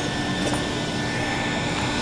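Steady hum and rush of fan and ventilation noise, with a couple of light clicks near the start.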